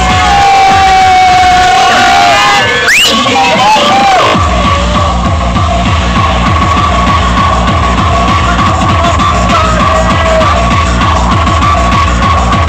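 Loud techno played from vinyl on DJ turntables through a sound system. The kick drum drops out for about a second and a half around three seconds in, under a rising sweep, then comes back with a steady beat.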